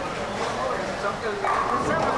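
Indistinct voices of people talking in a bowling alley, loudest near the end.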